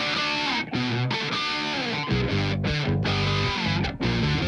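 Loud rock music from an electric guitar, bass guitar and electronic drums played together, with the bass and drums coming in heavily about two seconds in.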